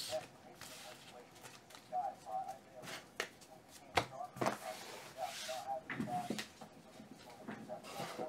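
Quiet handling noise at a table: a few scattered soft knocks and clicks as cards and boxes are moved off and set down on the mat.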